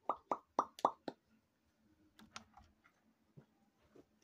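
A quick run of about six short pops or clicks in the first second or so, then a few fainter ticks.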